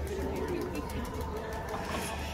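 Feral pigeon cooing among the chatter of passers-by, over a low steady rumble.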